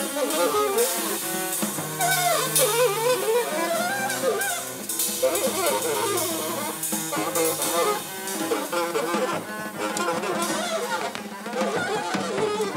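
Free jazz trio playing: a saxophone blows jagged lines of bending, wavering pitches and squeals over double bass and a drum kit's drums and cymbals.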